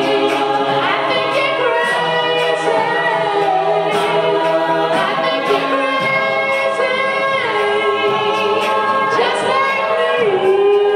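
Mixed male and female a cappella group singing through microphones, with layered held chords whose voices slide downward together every couple of seconds.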